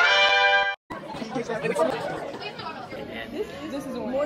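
A held musical chord cuts off suddenly under a second in, then the chatter of many people talking at once in a large room.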